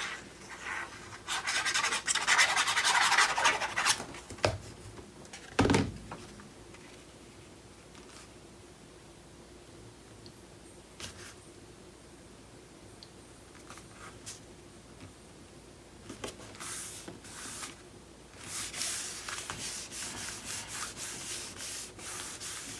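Hands handling paper and rubbing a patterned paper panel flat onto a cardstock page, dry paper-on-paper friction. A single knock comes about six seconds in, with a quieter stretch before the rubbing picks up again.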